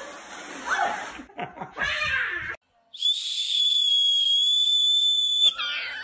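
Voices and laughter, then a loud, high-pitched whistle blown in one long steady blast of about two and a half seconds that cuts off suddenly.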